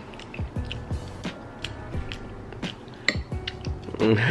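A person chewing a mouthful of cheesy mashed potatoes with closed mouth: soft, irregular wet mouth clicks over quiet background music.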